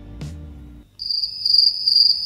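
Cricket chirping sound effect that cuts in suddenly about a second in, a steady high pulsing trill. It is the stock 'crickets' gag for an awkward, confused silence.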